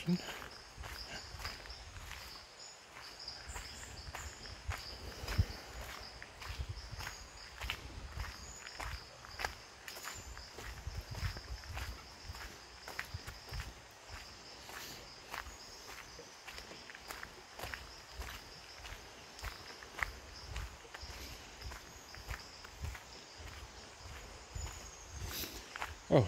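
Footsteps on a gravel road at a steady walking pace, with a steady high-pitched insect chorus behind them.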